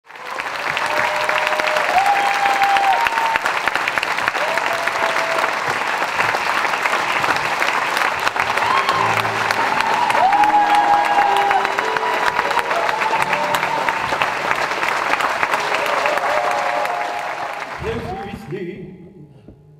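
Audience applauding steadily, with scattered cheering voices rising above the clapping, fading away near the end.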